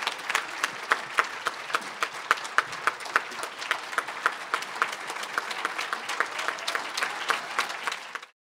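Audience applauding, with many individual claps standing out.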